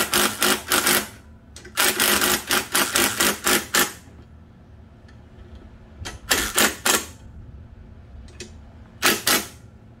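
Cordless drill tightening the top fork clamp bolts in four short bursts of rapid clicking, the longest about two seconds, with pauses between.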